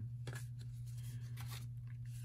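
Faint handling of a stack of trading cards, a few soft clicks and rustles as cards slide past one another, over a steady low hum.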